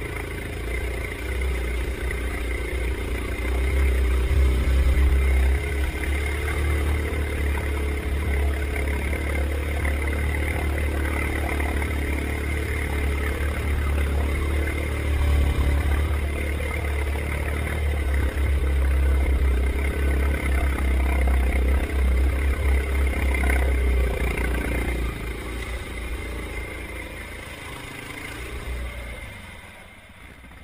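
Yamaha Grizzly 700 ATV's single-cylinder engine pulling under load through a deep, muddy waterhole, with water splashing around the quad, heard from inside a waterproof camera housing. The deep engine rumble holds loud for most of the stretch and eases off in the last few seconds.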